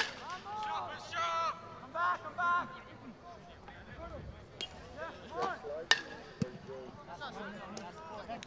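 Shouted calls from players on a soccer field, voices rising and falling in pitch, with several sharp knocks between them; the loudest knock comes about six seconds in.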